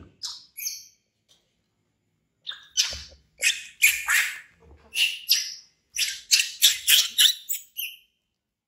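A baby monkey screaming in a rapid series of short, shrill cries, the sound of a frightened infant. The cries break off about a second in and start again before the middle.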